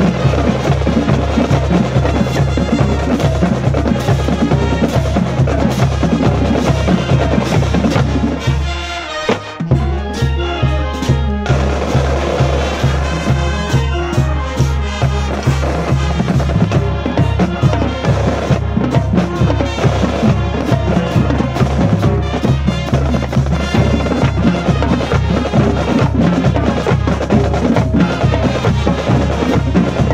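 High school marching band playing a stand tune: snare drums, bass drums and cymbals drive a steady beat under the brass and sousaphones. Between about eight and ten seconds in, the band thins out and the bass drops away, then comes back in full.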